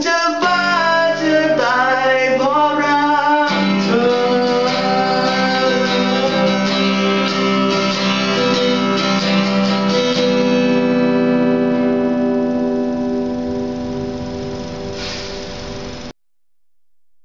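Man singing with an acoustic-electric guitar at the close of a song: a last sung phrase with gliding notes over the guitar for the first few seconds, then a final strummed chord left to ring and slowly fade. The sound cuts off suddenly at the end.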